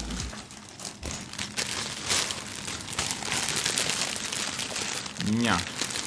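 Clear plastic bags of small LEGO pieces crinkling as they are handled and shaken, with a dense clatter of tiny plastic clicks; the loose pieces are being mixed inside the bags.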